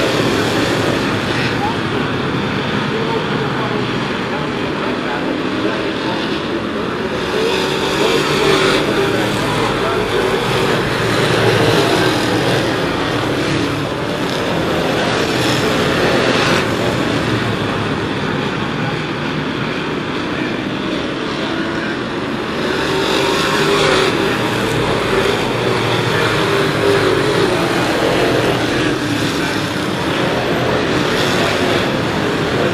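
A field of full-bodied Sportsman stock cars racing on a short oval, many engines running together at once. The sound swells and fades as the pack comes past, loudest twice: in the middle and again near the end.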